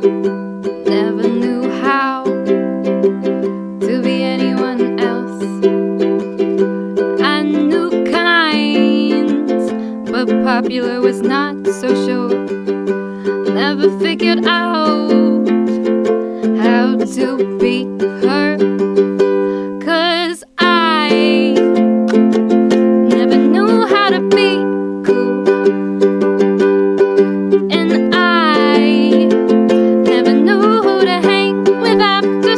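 Ukulele strummed in steady chords while a woman sings over it, her voice wavering on held notes. The strumming and singing break off for an instant about twenty seconds in, then carry on.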